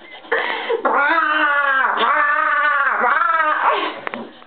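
A woman imitating a raptor's call with her voice: a short sound, then one long, high, wavering screech of about three seconds that dips in pitch twice.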